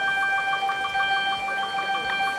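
Brass band playing a held chord, with one note repeated rapidly, about six times a second.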